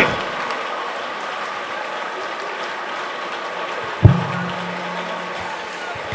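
Steady, even crowd noise from a congregation praying in a large hall. A single thump comes about four seconds in, followed by a brief low hum.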